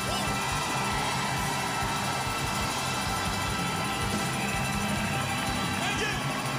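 Live soul-disco band and symphony orchestra playing together at full volume: held orchestral chords over a steady drum beat and bass.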